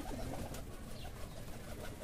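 Domestic pigeons cooing faintly.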